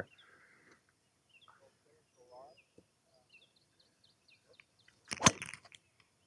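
A golf driver strike: the Mizuno ST190 driver's titanium head hits the ball with one sharp, loud crack about five seconds in, after a long quiet stretch at address.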